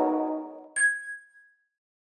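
Ambient outro music fading out, then a single bright electronic ding about three-quarters of a second in that rings briefly and dies away.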